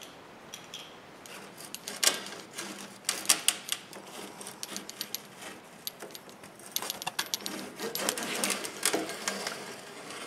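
A screen spline roller's metal wheel pressing rubber spline and screen mesh into a metal door frame's channel: a run of irregular clicks and crackles, in two busier spells.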